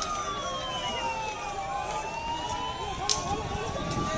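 A siren wailing slowly, its pitch sliding down and then back up, over the noise of a crowd's voices, with a single sharp crack about three seconds in.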